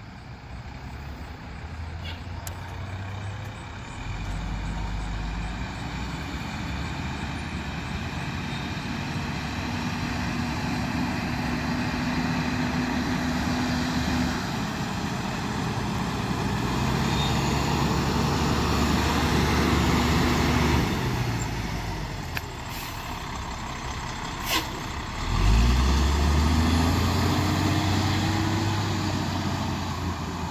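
Fire engine's diesel engine running as the truck approaches and passes, growing louder toward the middle. Near the end a sharp click is heard and the engine revs up with a rising pitch as it accelerates away.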